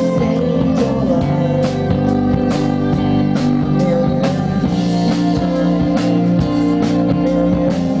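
Live indie-pop band playing: electric guitars, a violin and a drum kit with a steady beat.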